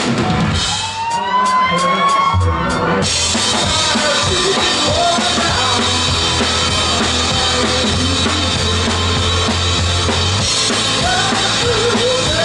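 Live rock band playing: electric guitars, bass guitar and drum kit. For the first couple of seconds the bass drops out under higher gliding guitar notes, then the full band comes back in with heavy bass and drums.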